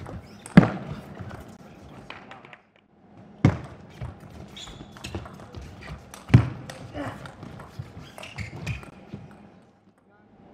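Table tennis doubles rally: the ball ticking off rackets and table, with three loud sharp hits about half a second, three and a half and six seconds in.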